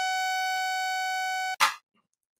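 Synthesized mosquito whine from a Web Audio sawtooth oscillator set to about 750 Hz: a steady buzzing tone. About one and a half seconds in it stops abruptly with a short hand-clap sound effect that marks the mosquito being switched off.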